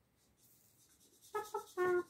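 A felt-tip marker scratching faintly on paper. After about a second a child starts singing short nonsense syllables ('pi pi pa pa pa'), each note held at a steady pitch; these are the loudest sound.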